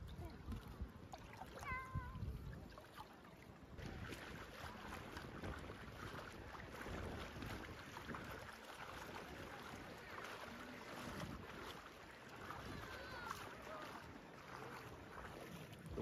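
Shallow bay water lapping and sloshing around someone wading, with a low rumble of wind on the microphone; the water noise turns busier and splashier about four seconds in.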